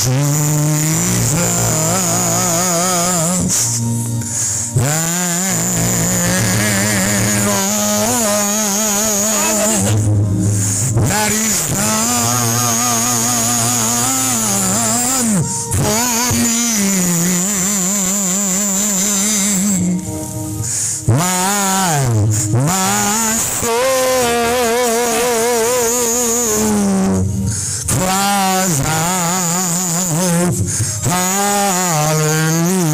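A man singing a slow gospel song into a microphone over a PA, with long held notes and wide vibrato, over steady low accompanying tones. There are short breaks between phrases.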